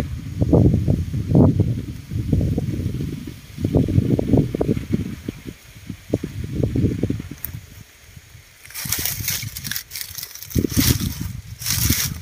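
Strong gusty wind buffeting the microphone in uneven low rumbling surges, dropping off briefly past the middle. Two short bursts of crackly rustling come in near the end.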